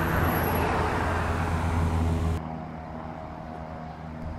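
Propeller airplane's engine drone just after takeoff, steady and loud. It drops suddenly about two and a half seconds in, then carries on more faintly.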